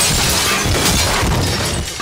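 Loud crash of shattering glass and clattering wreckage as a car is smashed in a film fight scene, dying away near the end.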